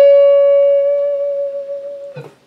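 A single electric guitar note, string-bent up in pitch right at the start, then held and slowly fading as it sustains.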